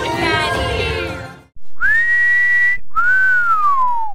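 Two-note wolf whistle: the first note rises and holds high, the second slides down and cuts off. Before it, music fades out in the first second and a half.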